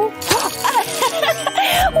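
Background music, with wet squelching from a slime-filled squishy toy being squeezed, and a gasp right at the end.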